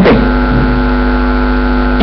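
Loud, steady electrical mains hum from a corded microphone's sound system: a buzz with many evenly spaced overtones that holds level throughout.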